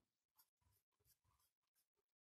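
Near silence, with the very faint scratch of a ballpoint pen drawing on paper.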